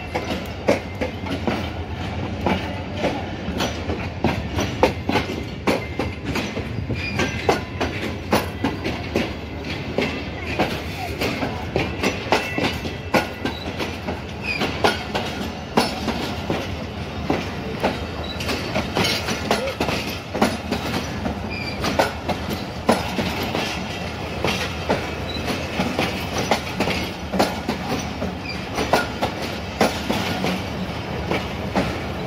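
Passenger train coaches rolling past close by, with a steady rumble and a continual irregular clatter of wheel clicks over the rail joints.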